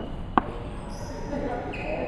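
A basketball bouncing on a hardwood gym floor: one sharp knock shortly after the start.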